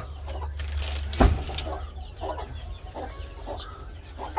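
Chickens clucking in short, scattered calls, with one sharp knock about a second in.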